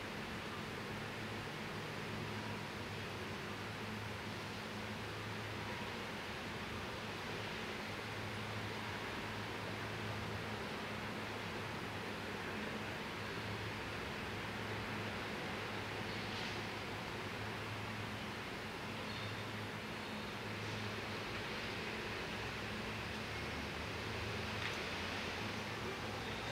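Steady open-air background noise, an even hiss with a low hum underneath and no distinct events.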